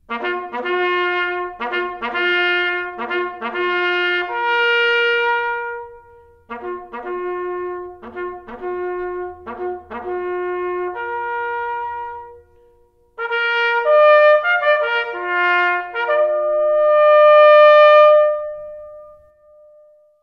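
A solo bugle call on a brass horn, sounded in three phrases. Each phrase is a run of quick repeated notes that ends on a held note. The last held note is the highest and the longest.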